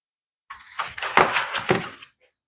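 White foam packing block rubbing and scraping against the resin printer's plastic housing as it is pulled out, starting about half a second in with a series of quick scuffs.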